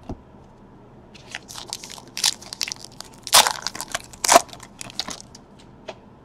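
A trading-card pack's wrapper being crinkled and torn open: a run of irregular crackling crunches, loudest about three and a half and four and a half seconds in.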